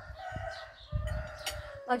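A rooster crowing once, one long held call that lasts almost two seconds and drops slightly in pitch as it ends.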